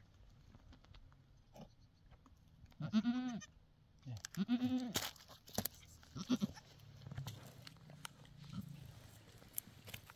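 A goat bleating while held down on its side: two loud, long bleats about three and four and a half seconds in, then a shorter one near six seconds.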